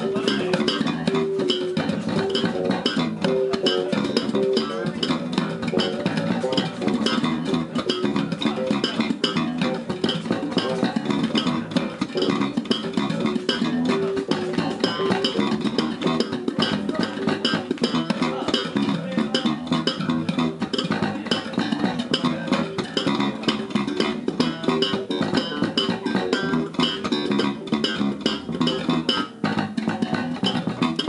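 Three electric bass guitars played together through amplifiers in a busy, continuous groove of sharp, percussive slapped and plucked notes.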